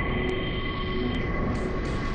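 Dark ambient soundtrack music: a low rumbling drone under several steady high tones, with a few short low notes.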